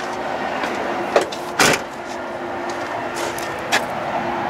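Handling and movement noise from someone climbing out of a truck cab: a few short knocks and scuffs, the loudest about one and a half seconds in, over a steady background hiss.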